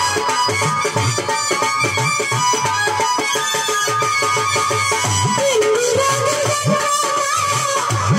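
Live Bengali folk music: a dhol drum beats a steady rhythm of low strokes that bend up in pitch, under a sustained, wavering melody line.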